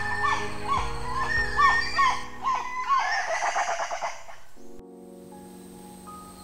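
Geoffroy's spider monkey whinny: a run of about seven short rising-and-falling calls in the first three seconds, ending in a rougher, noisier stretch. It plays over a soft music bed, and the music carries on alone after about five seconds.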